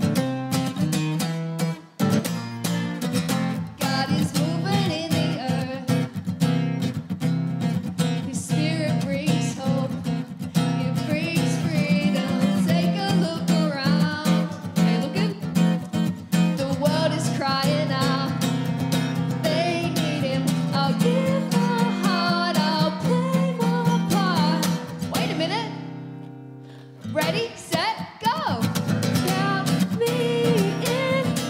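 A worship song performed on strummed acoustic guitar with a woman singing the lead vocal. Near the end the music drops away briefly, then comes back in.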